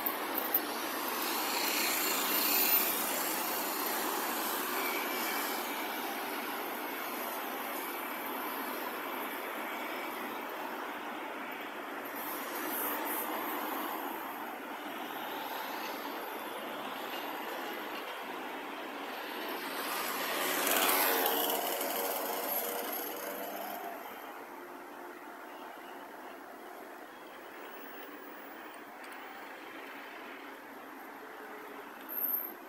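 Road traffic on a city street, a steady noise of passing cars and vans. About two-thirds of the way through, one vehicle passes close, louder and dropping in pitch as it goes by, and then the traffic noise falls off.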